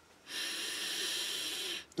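A person taking one long, steady sniff through the nose, lasting about a second and a half, to smell a sheet of freshly laser-cut plywood model parts.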